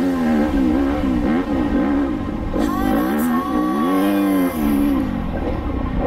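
Enduro motorcycle engine revving up and down again and again as the throttle is worked, with background music.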